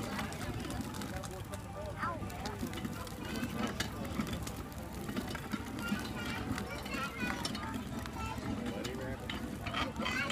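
Hand-cranked cast-iron corn grinder being turned steadily, its burrs grinding dry corn kernels with a rough, continuous grinding noise and occasional clicks. Voices can be heard in the background.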